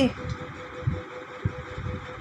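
Background noise between spoken words: an irregular low rumble with a steady faint hum.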